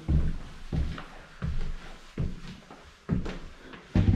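Footsteps climbing an indoor staircase: about five thudding footfalls, roughly one every three-quarters of a second.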